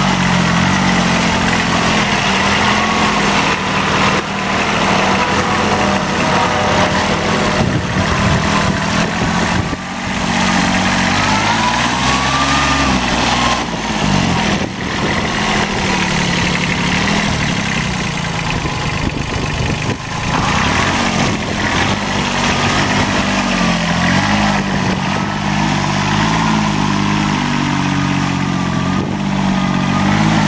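Kubota B7100 compact tractor's three-cylinder D750 diesel engine running steadily as the tractor is driven around. Its pitch rises and drops back once about twelve seconds in, with smaller throttle changes elsewhere.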